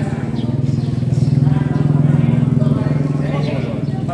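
An engine running with a steady low buzzing hum, growing louder over the first two seconds and fading toward the end, as a motor vehicle going by close at hand.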